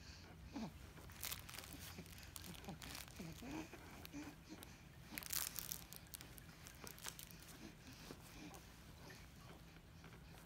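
Faint, irregular crinkling and rustling of a baby's fabric crinkle toy being grabbed and handled, loudest about five seconds in, with a few soft baby grunts.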